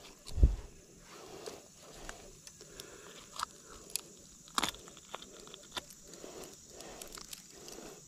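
Close-up handling sounds while a snakehead held in a metal fish lip-grip is unhooked: a low thump about half a second in, soft rustling, and a few short sharp clicks, the loudest about four and a half seconds in.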